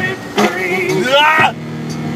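A man singing inside a truck cab, holding one note for about half a second and then sliding through a run of rising and falling pitches, over the steady engine and road noise of the cab.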